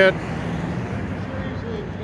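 Steady outdoor background noise with a low, even hum underneath and a faint distant voice near the end.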